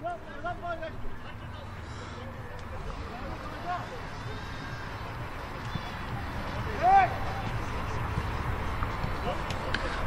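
Footballers' shouts and calls on the pitch over steady background noise, with one louder shout about seven seconds in.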